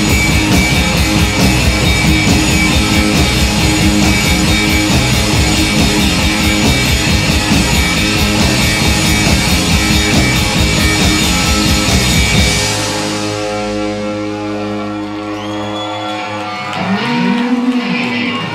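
Live rock band with two electric guitars, bass guitar and drum kit playing the instrumental ending of a song. About two-thirds of the way in, the drums and bass stop, leaving guitar chords ringing on with a few sliding notes near the end.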